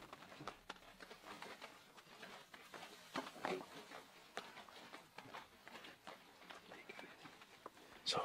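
Very quiet background with faint, irregular ticks and taps scattered throughout, and a brief faint voice about three and a half seconds in.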